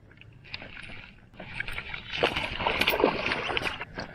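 Water splashing and sloshing beside a kayak as a hooked muskie thrashes at the surface during the fight. It is faint at first and grows louder and busier from about a second and a half in.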